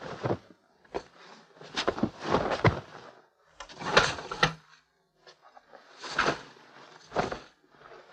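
Wooden knocks, bumps and rustling as a storage bed's hinged wooden lid is lifted and bedding and clothes are handled, several separate bursts rather than one steady sound.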